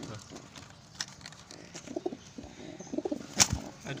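Domestic King-cross pigeons in a cage, cooing in short low pulses and stirring their wings. A single sharp slap, the loudest sound, comes about three-quarters of the way through.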